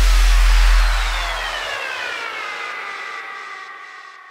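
Electronic logo sting: a deep bass boom that holds and then fades out under a noisy shimmer, with tones gliding slowly downward in pitch as the whole sound dies away.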